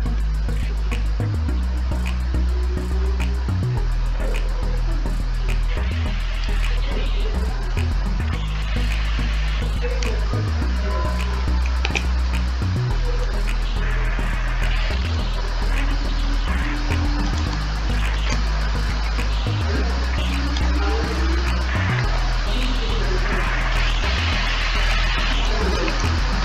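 Background music with a deep bass line that changes every few seconds.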